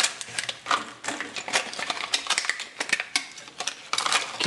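Irregular clicking and crackling of a clear plastic blister pack being handled and pulled open to free a fidget spinner from its card backing.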